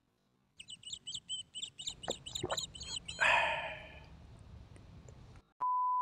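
Small birds chirping rapidly for a couple of seconds, with a few light clicks and a short hissy burst that fades away. Near the end a steady 1 kHz test-tone beep begins, the tone that goes with colour bars.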